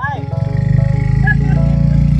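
Suzuki Gixxer SF 250's single-cylinder engine running on the move, a low rapid pulsing that grows louder about half a second in.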